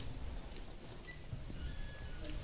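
Footsteps of uniformed guards' boots on the floor as they walk in, irregular low thuds over faint room noise.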